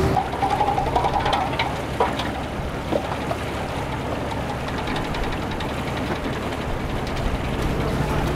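A fishing boat's engine running with a steady low chug. A few sharp knocks come about two and three seconds in, as wire-mesh traps and rope are handled on deck.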